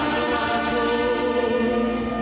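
Live orchestra of brass, woodwinds and strings playing held, sustained chords, with the harmony shifting about a quarter second in and again near the end.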